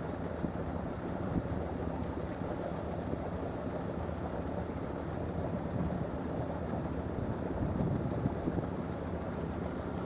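Southerly 95 sailing yacht's inboard diesel engine running steadily while motoring under way, with a rapid high-pitched pulsing chirr over it throughout.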